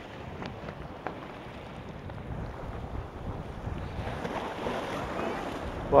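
Sea waves washing and foaming against the boulders of a rock breakwater, with wind buffeting the microphone: a steady rushing noise.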